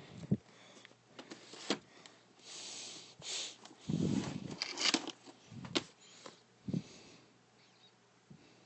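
Handling noise from plastic movie cases held close to the microphone: irregular knocks and clicks with hissy scraping and sliding in between, loudest a little past the middle.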